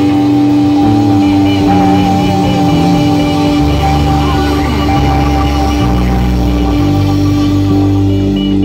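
Live rock band playing loud, with electric guitars, a Nord Electro 6 keyboard, bass and drums. A long high note with vibrato rides over a held chord while the bass line steps underneath.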